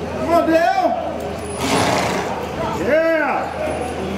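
Onlookers shouting drawn-out calls of encouragement, one long rising and falling shout about three seconds in, with a short rushing hiss around the middle.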